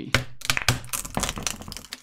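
Old wooden timbers cracking and splintering as they are wrenched apart, a rapid run of sharp cracks and knocks.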